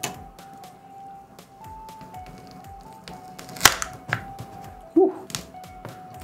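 Sharp clicks and knocks of a small tool prying a Sony phone's battery loose from its body, the loudest a single sharp snap about three and a half seconds in, over soft background music with a simple melody.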